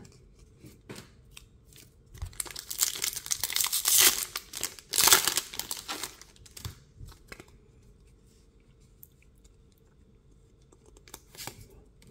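A Pokémon booster pack's foil wrapper being torn open and crinkled, in a loud crackling stretch from about two to six seconds in. It is quiet apart from faint ticks before and after.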